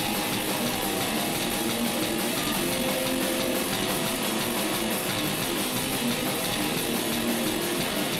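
Metal band playing live: electric guitars over a drum kit, the sound dense and steady without a break.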